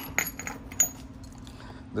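A few light clinks and clatters of metal parts and tools on a workbench, one with a brief high ring, as a hand moves among them and picks up a small boxed part; a faint steady hum runs underneath.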